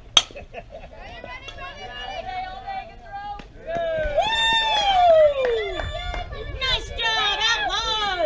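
A softball bat hits a pitched fastpitch softball with one sharp crack just after the start. It is followed by spectators and players shouting and cheering, loudest in the middle with one long falling yell.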